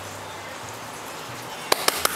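Low steady room hum, then near the end a quick run of sharp clicks: a Cavalier King Charles spaniel puppy's claws striking a hard floor as it runs.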